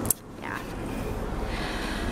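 Steady background hum and hiss of a room, with a sharp click at the very start and a softly spoken "yeah" about half a second in.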